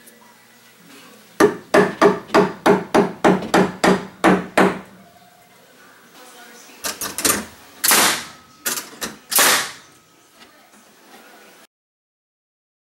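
Claw hammer striking an overhead wooden top plate: a quick run of about a dozen blows, about four a second, then a pause and a few more spaced blows.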